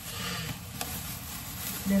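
Soft rustling and a single sharp click about a second in, from dishes and their wrapping being handled, with a faint low murmur of voice.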